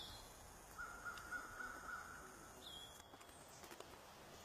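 A faint, drawn-out animal call lasting about two seconds, with a short chirp near the end.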